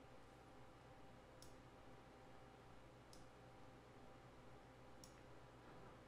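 Near silence with three faint computer-mouse clicks, spaced about a second and a half to two seconds apart, over quiet room tone.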